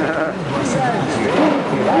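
Indistinct voices over steady road and engine noise, heard from inside a moving car.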